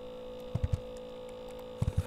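Steady electrical mains hum in the recording, with a few short, soft low thumps: a pair about half a second in and another pair near the end.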